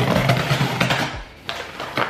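Box cutter slicing along the packing tape and cardboard of a shipping box: a rough rasping scrape lasting about a second, then a couple of light taps.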